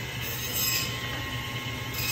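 Steady background hum of a grocery store with a faint high whine running through it.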